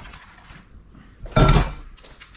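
Kitchen handling sounds with one loud knock about one and a half seconds in, as an egg is picked up and cracked against the rim of a ceramic bowl.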